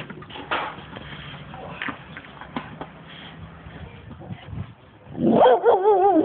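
American pit bull whining in one long, wavering call that starts about five seconds in. Before it there are scattered light knocks and scrapes.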